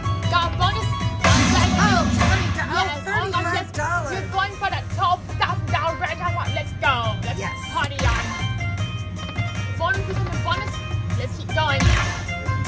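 Aristocrat Dragon Link video slot machine playing its hold-and-spin bonus music and chimes as the reels respin and fireball symbols land, over casino background noise and voices.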